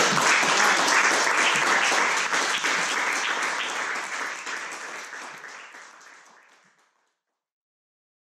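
A small audience clapping and applauding at the close of a song. The applause is loudest over the first few seconds, then fades out gradually to silence about seven seconds in.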